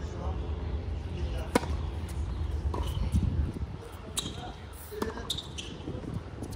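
Tennis rally on an outdoor hard court: a series of sharp pops as rackets strike the ball and the ball bounces, the loudest about one and a half seconds in.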